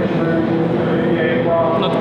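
A woman's voice hesitating mid-sentence, over a steady background rumble.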